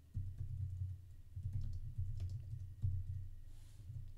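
Typing on a computer keyboard: a quick, uneven run of key clicks over dull low thumps, as a few words are typed.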